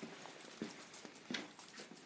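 A dog moving about on a concrete floor while searching: a few scattered light knocks and scuffs of its paws and claws, the strongest about a second and a half in.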